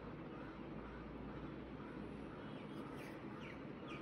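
Faint room background, with a bird chirping a run of short downward-sliding notes, about three a second, from about three seconds in.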